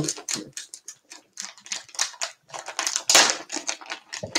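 Rapid, irregular clicking and rustling of things being handled close to the microphone, with a louder burst about three seconds in.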